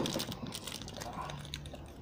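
Foil-lined chocolate-bar wrapper crinkling as it is handled, a quiet run of small irregular crackles.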